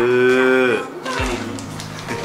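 A single drawn-out, moo-like call with a rich, steady pitch, lasting under a second. Quieter crinkling of a plastic bag follows.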